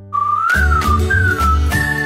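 Cartoon title jingle: a whistled tune gliding up and down over bass notes and percussive hits, settling on a long held note near the end.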